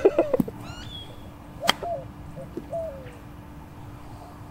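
Birds calling outdoors: quick high chirps about a second in, then a few short, low falling calls. A single sharp click cuts in a little under two seconds in.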